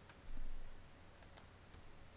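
A few faint clicks of a computer mouse, with a soft low thump about a third of a second in.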